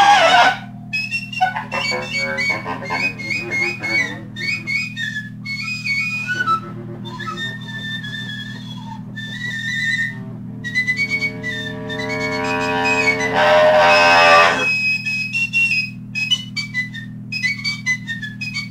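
Free-improvised jazz duet from a 1969 recording: a high wind instrument plays fast, darting runs of short notes. The notes thicken into a louder, shrill passage about 13 to 14 seconds in. Underneath runs a steady low hum.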